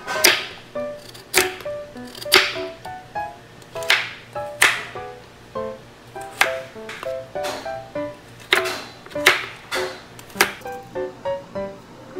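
Chef's knife chopping through a carrot onto a wooden cutting board: sharp knocks about once a second. Light plucked-string background music plays throughout.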